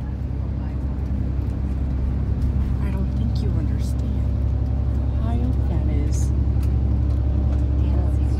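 Tour coach's engine and road noise heard from inside the passenger cabin while driving: a steady low drone that swells slightly at the start.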